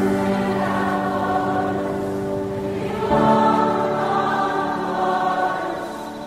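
Choral music: a choir holding long, sustained chords, moving to a new chord about three seconds in.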